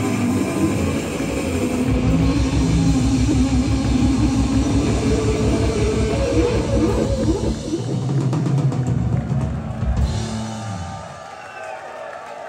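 A live rock band plays loud and dense, with distorted electric guitars through Marshall stacks over a pounding drum kit. The song winds down and the music stops about a second before the end.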